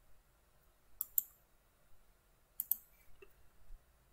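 Quiet computer mouse clicks: two pairs of sharp clicks about a second and a half apart, then a fainter single click.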